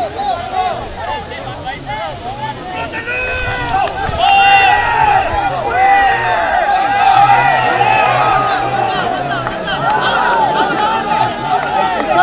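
Many voices shouting over one another, as players and touchline spectators call out during a rugby lineout and maul. It gets louder about four seconds in.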